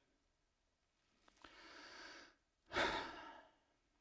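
A man breathing in softly, then letting out a short, louder sigh.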